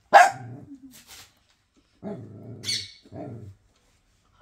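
Small white long-haired dog barking: one sharp, loud bark right at the start, then two lower barks about two and three seconds in.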